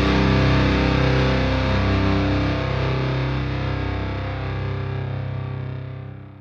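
Distorted electric guitar and bass holding the closing notes of a heavy metal / post-rock instrumental track, ringing out and fading steadily, then dropping off sharply near the end as the track ends.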